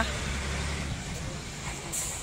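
Low, steady background rumble, strongest for about the first second and then fainter.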